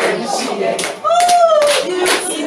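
Hand clapping along with a woman singing into a microphone, with one held sung note about a second in.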